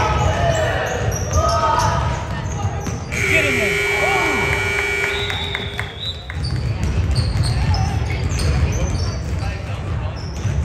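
Basketballs bouncing on a hardwood gym floor, with voices echoing in the hall. About three seconds in, a steady buzzer sounds for about three seconds, then the bouncing resumes.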